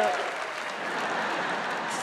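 Studio audience applauding, louder at first and easing off after about half a second.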